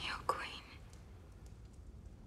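A person's single short, breathy whisper about half a second long, with a small sharp click in it, at the very start. After that there is quiet room tone.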